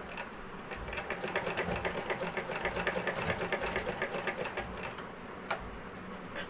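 Domestic sewing machine stitching a seam in fast, even ticks of the needle. It starts about a second in and stops about a second before the end, followed by one sharp click.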